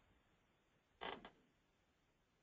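Near silence, broken by one brief, faint sound about a second in.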